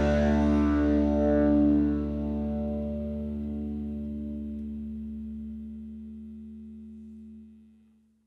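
Final chord of an indie rock song, an effected, distorted electric guitar chord over low bass, left to ring out and fade slowly, dying away to silence near the end.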